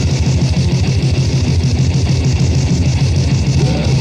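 Psychedelic grindmetal from a 1990 cassette demo: heavily distorted guitars over fast, dense drumming, loud and unbroken. Near the end a note bends up and back down.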